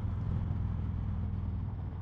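2019 Indian Chieftain Dark Horse's Thunder Stroke 111 V-twin running steadily at highway cruising speed, a low pulsing rumble mixed with wind and road noise.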